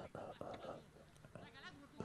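Faint, distant human voices: short shouts and calls carrying across a football pitch.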